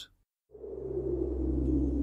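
A moment of dead silence, then a low, steady ambient drone with a few held tones fades in about half a second in: the opening of a break's music bed.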